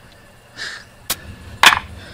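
A sharp click and then a louder clack with a brief ringing tail, about a second and a half in. This is the garage door opener's sprocket, in its metal bracket, being set down on a concrete driveway.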